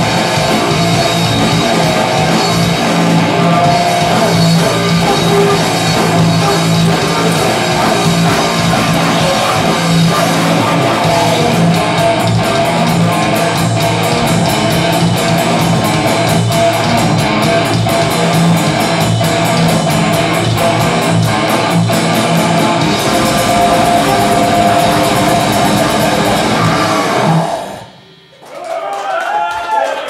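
Live grindcore band playing loud, with heavily distorted electric guitar and a drum kit going flat out. The song stops suddenly about 27 seconds in.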